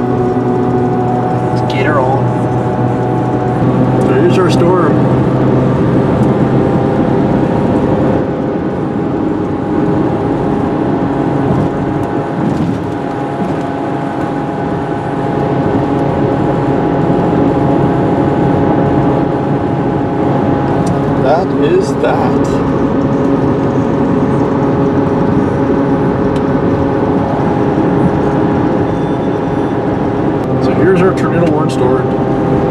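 Inside a moving vehicle on a highway: steady engine and tyre hum, with muffled voices over it.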